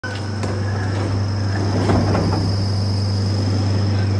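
Overhead electric hoist motor running under load with a steady low hum and a thin high whine, lowering a slung machine cabinet. Some knocking and rattling comes from the load about halfway through.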